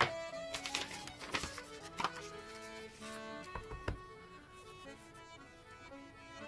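Background instrumental music with held melodic notes, joined by a few light knocks and taps on the work surface.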